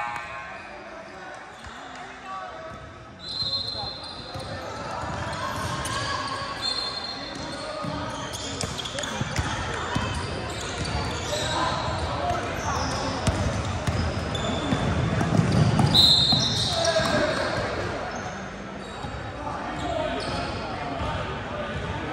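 Live basketball play echoing in a large gym: the ball bouncing on the hardwood, sneakers squeaking on the floor and players and spectators calling out, with the loudest flurry about two-thirds of the way through.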